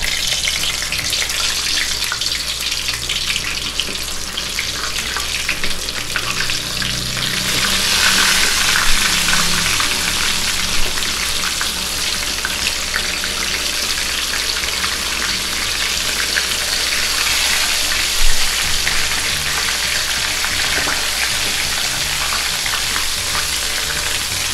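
Flour-coated chicken pieces shallow-frying in hot oil in a wok on medium heat: a steady crackling sizzle that grows louder about eight seconds in as more pieces go in. A couple of sharper pops stand out.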